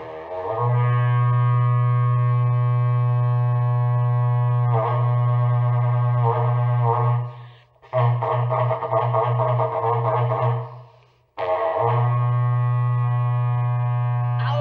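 Berrante, the Brazilian ox-horn herding trumpet, blown in three long held blasts. The first lasts about seven and a half seconds and turns to quick wavering pulses in its second half; the second, about three seconds long, wavers throughout; the third starts about eleven and a half seconds in and is still sounding at the end.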